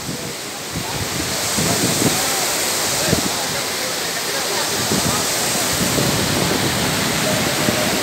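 Floodwater pouring over a lake's overflow weir (kodi) and rushing through the channel below, a loud, steady roar of water that builds during the first second and then holds.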